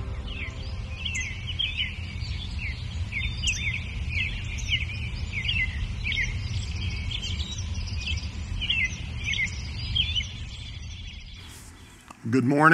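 Small songbirds chirping repeatedly in an outdoor ambience over a low steady rumble, fading out just before the end.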